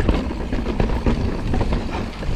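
Forbidden Dreadnought full-suspension mountain bike descending a rough dirt trail: tyres rumbling over the ground with many quick rattling knocks from the bike as it rolls over roots and stones.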